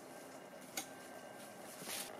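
Soft sounds of digging in loose garden soil by hand, with two light clicks, one near the middle and one near the end.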